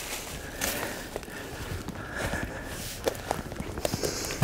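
Footsteps and scuffing on dry leaf litter and forest floor as a person climbs a steep slope, with a few sharp clicks along the way.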